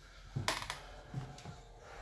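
A sharp click about half a second in, followed by a few soft low thumps: handling noise and footsteps from a phone carried while walking.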